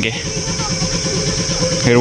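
Massey Ferguson tractor's diesel engine idling with an even low rumble, under a steady high insect buzz.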